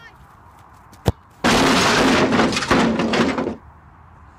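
A football kicked hard once, a sharp thud about a second in, followed by a loud, raspy shout of frustration lasting about two seconds.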